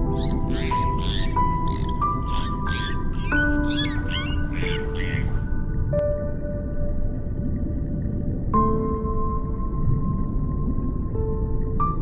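Gentle background music of slow sustained notes. Over it, in the first five seconds or so, a run of about ten short, high squeaky sounds, roughly two a second.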